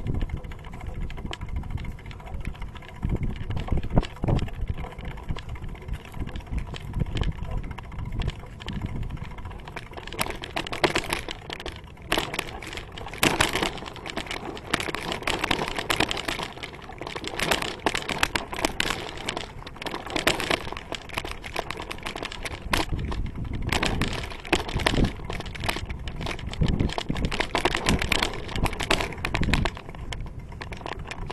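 Bicycle rolling over a rough dirt and sand path: a steady low rumble with irregular crunching and rattling clicks, which grow denser and brighter about ten seconds in.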